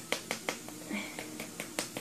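A quick, irregular run of sharp clicks or snaps, about four a second, in a small room.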